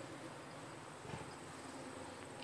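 Faint outdoor background of insects chirping steadily, a thin high tone.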